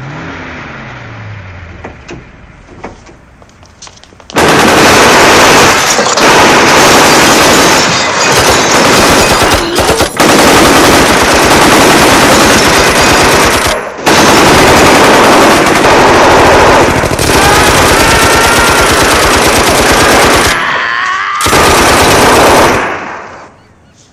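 Several Thompson submachine guns firing long, continuous automatic bursts. The gunfire starts suddenly about four seconds in, breaks off briefly three times, and stops shortly before the end.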